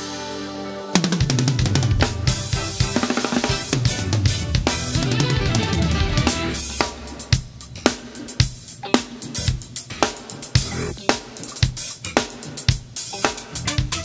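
Acoustic drum kit played along with a recorded band track. Held keyboard chords ring for about a second, then drums and band come in together with a hit. Past halfway the backing thins out and sharp kick, snare and cymbal hits stand out over it.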